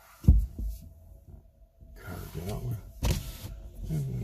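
A single low thump about a third of a second in, the loudest sound. Near the end comes a brief mumble of a man's voice and a sharp knock.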